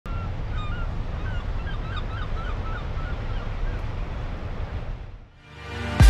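Sound of ocean surf with gulls calling repeatedly over it, fading out about five seconds in. Music fades in near the end.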